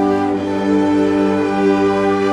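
Orchestra with a violin section playing a slow passage of long, held bowed notes, moving to a new chord about half a second in.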